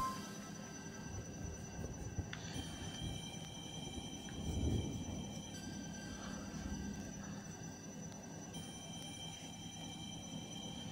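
Faint background music of held notes that change every few seconds, with a soft low swell about halfway through.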